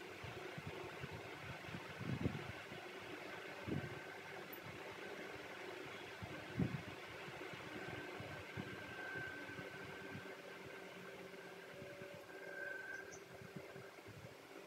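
Steady background hum, like a fan or distant motor, with a faint high whine. Three soft low thumps come about two, four and six and a half seconds in.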